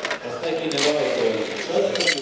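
Background chatter of several voices, with a brief clatter about a second in as a metal cocktail shaker and bottles are handled.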